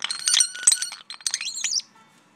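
European starling singing: a rapid run of clicks, rattles and high whistles, with sliding whistled notes near the end before it stops.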